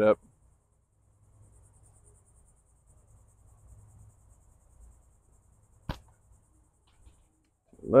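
A single sharp crack of a slingshot shot about six seconds in, from a slingshot with 2 mm solid round latex bands shooting quarter-inch steel. A faint, steady, high pulsing insect trill runs behind it.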